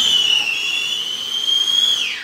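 A ground fountain firework burning with a loud, steady, high-pitched whistle over a hiss of spraying sparks.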